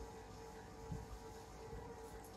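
Faint steady hum of room tone, with a soft low bump about a second in as the saree fabric is handled.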